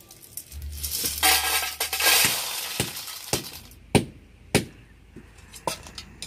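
Roasted river snails in their shells tipped from a metal wok into a steel bowl: a loud rush of rattling, clinking shells lasting about a second and a half. After it come several separate sharp knocks of cookware being handled and set down.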